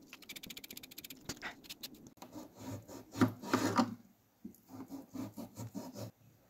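Handheld vegetable peeler scraping the skin off a raw potato in quick repeated strokes, loudest about three seconds in, followed near the end by a knife slicing through the peeled potato onto a cutting board in a slower run of soft cuts.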